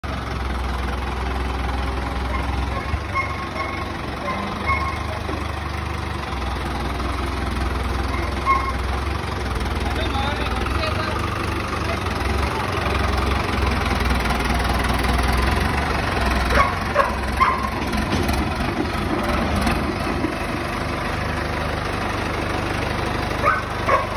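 New Holland 5630 tractor engine running steadily at low revs while it pulls a trolley loaded with grain sacks.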